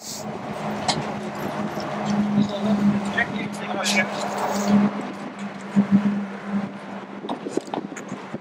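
A steady low hum with a slight pulsing beat, under indistinct people's voices and a few sharp clicks and knocks.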